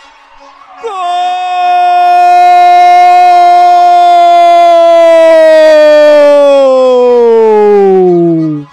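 A sports commentator's long held goal shout into the microphone, starting about a second in, held on one pitch for several seconds and falling in pitch at the end.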